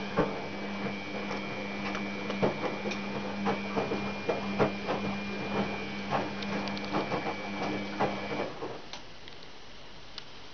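Samsung front-loading washing machine running: a steady motor whine with a higher whistle as the drum turns, with irregular clicks and knocks over it. The motor stops about eight and a half seconds in.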